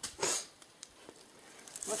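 A hand tool chopping into stone in hard dirt: one short strike near the start, followed by a couple of faint clicks.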